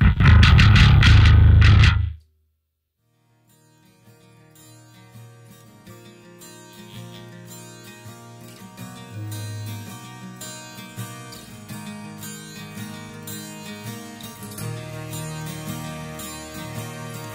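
A loud final chord from the full metal band, guitars and drums together, cut off sharply about two seconds in. After a short silence a clean, effects-treated electric guitar intro with bass underneath fades in, ringing held notes that slowly build in loudness.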